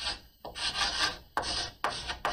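Chalk writing on a blackboard: a quick run of scratchy strokes, each starting with a tap as the chalk meets the board.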